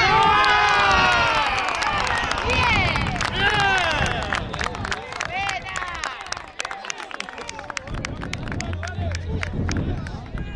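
Spectators shouting and cheering a goal, many voices at once and loudest in the first few seconds, then thinning out into a few calls with a run of sharp cracks.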